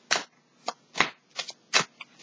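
A tarot deck being shuffled by hand: about six short, sharp card sounds in two seconds, unevenly spaced.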